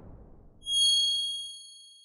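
Bright chime sound effect for a logo reveal: after a fading whoosh, a single ding strikes about half a second in and rings out with several high tones, decaying over a second and a half.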